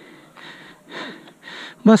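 A person panting hard close to the microphone, a breath about every half second, as from running. A short spoken word comes near the end.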